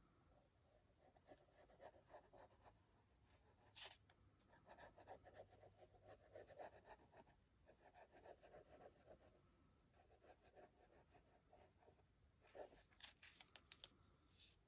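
Faint scratching of a glitter-glue bottle's fine tip drawn along paper, in several stretches, with a sharp tick about four seconds in and a few clicks near the end.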